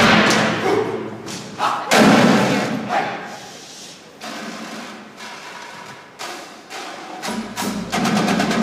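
Indoor percussion ensemble playing sparse, accented hits: heavy thumps and sharper clicks that ring out in a large gym, the loudest about two seconds in. Softer scattered strokes follow, and a denser run of hits starts near the end.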